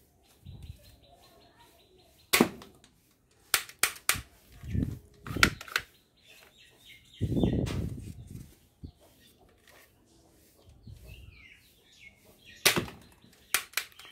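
Sharp plastic clicks and snaps from a toy foam-dart pistol being handled and loaded, at irregular spacing, with a few dull thumps, the loudest just past the middle.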